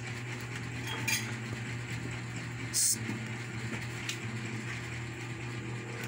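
A few short, light clinks and knocks of plates and plastic tableware being handled on a table, the sharpest one near the middle, over a steady low hum.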